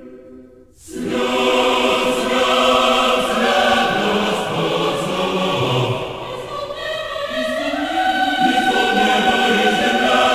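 A choir singing Russian Orthodox church music in long held notes. The singing fades to a brief pause in the first second, then the choir comes in again and sings on.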